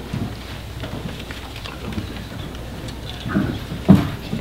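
Faint shuffling and small knocks of someone settling at a table with papers, then one sharp, loud thump close to the desk microphone near the end.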